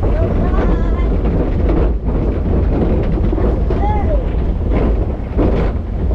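Log flume boat riding along its water trough: a loud, steady rumble of wind buffeting the chest-mounted camera's microphone over rushing water. A brief voice comes through about four seconds in.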